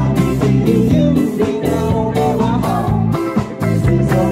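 Live rock band playing loud: drums keeping a steady beat under bass and electric guitar, with a lead line that bends in pitch.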